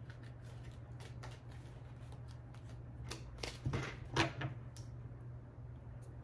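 Tarot cards being handled: a fanned deck leafed through with soft, scattered card clicks and slides, and a few louder card taps a little over halfway through as a card is pulled and laid on the wooden table. A low, steady hum runs underneath.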